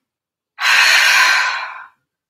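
A woman's loud, forceful exhale through the mouth lasting a little over a second, starting about half a second in: a 'fierce breath' pranayama exhalation, the breath pulled out hard.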